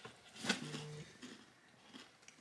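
Mostly quiet room. About half a second in there is a faint click, followed by a brief low murmured voice.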